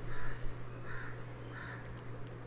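A bird calling three times in an even rhythm, about one call every three-quarters of a second, over a steady low hum.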